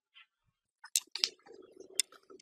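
Carom billiard balls clicking sharply on a three-cushion table as a side-spin shot plays out: three distinct clicks, about a second in, a moment later, and near the end, with a faint low hum between them.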